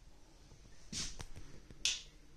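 Two sharp clicks about a second apart, the second brighter and hissier, with a few faint ticks between them.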